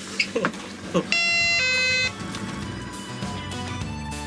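Electronic two-tone shop door chime, a high tone then a lower one, sounding once about a second in, followed by background music starting up.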